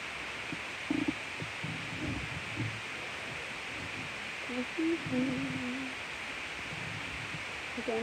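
A faint voice sounds briefly about halfway through, over a steady hiss, with a few soft knocks in the first three seconds.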